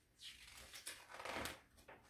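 Pages of a picture book being turned by hand: a soft papery rustle with a few quick flicks, loudest about a second and a half in.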